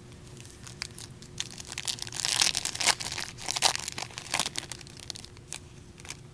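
A foil trading-card pack wrapper being torn open and crinkled by hand, in a run of irregular crackling bursts through the middle few seconds.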